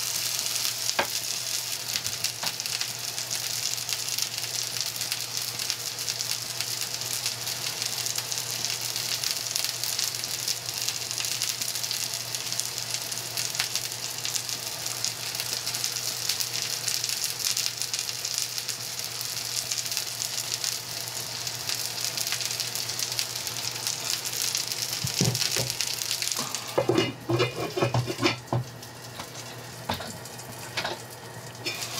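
Plant-based burger patties frying in grapeseed oil in a cast-iron skillet: a steady, high sizzle. Near the end, a few loud metal clanks as a steel lid goes onto the pan, after which the sizzle is muffled and quieter.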